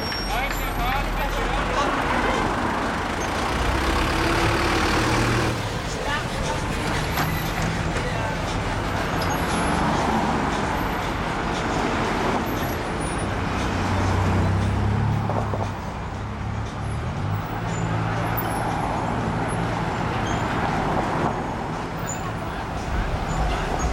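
Steady city street traffic at a busy intersection: car and taxi engines and tyres running together in a continuous wash of noise, with the low hum of a heavy vehicle's engine coming up about two-thirds of the way through.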